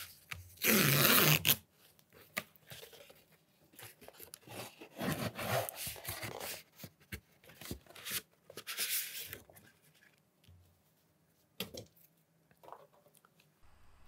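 Tear strip of a cardboard mailer envelope ripped open in one loud tear lasting about a second. Then cardboard rustling and scraping in several softer stretches as a thin sheet is slid out of the envelope, with a small click near the end.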